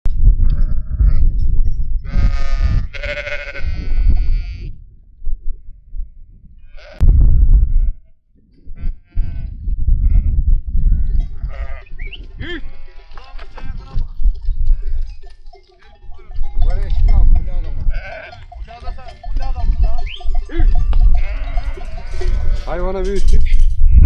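Sheep bleating from a large penned flock: a few loud single calls, then many overlapping bleats from about halfway through. A heavy low rumble runs underneath.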